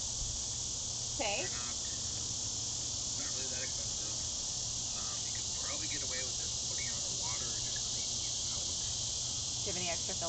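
Steady, unbroken high-pitched chorus of crickets, with a low steady hum underneath.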